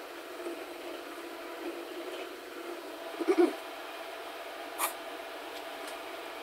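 Clamps and the pinned knife workpiece being handled at a drill press over a steady low workshop hum: a short clunk about three seconds in and a sharp metallic click near five seconds.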